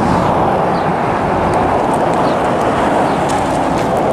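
Steady roar of traffic on the road, vehicle tyres on the road surface, holding at an even level throughout.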